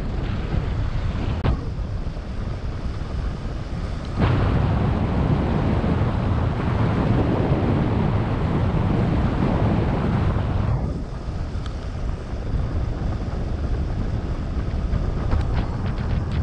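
Airflow buffeting the camera microphone of a paraglider pilot in flight: a steady low rush of wind. It jumps louder about four seconds in and eases again near eleven seconds.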